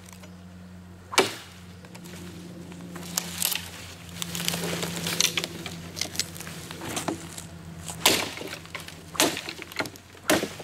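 Wood cracking and splitting as a branch, already chopped halfway through, is worked apart at the cut with a thick-bladed Schrade Bolo machete. Two sharp knocks, about a second in and near the end, with lighter cracks and crackling between.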